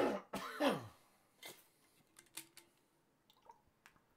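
A man coughing hard twice, about half a second apart, with a rough, throat-clearing edge. After that come a few faint clicks and taps.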